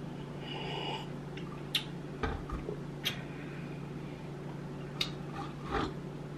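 Quiet sounds of a man drinking from a plastic bottle: swallowing, breathing through the nose and small mouth clicks, over a steady low hum. Near the end comes a soft thud as the bottle is set down on the table.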